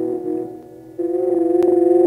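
Electronic synthesizer music: a held chord fades away, then comes back louder about a second in and holds steady.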